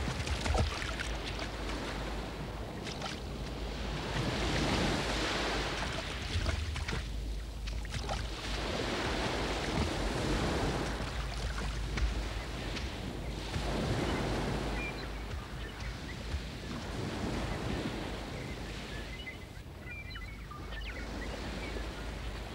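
Waves washing onto a sandy beach, the surf swelling and receding every few seconds.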